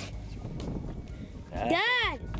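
Low, even background noise from wind and water, then near the end a single short shout from a person whose pitch rises and falls.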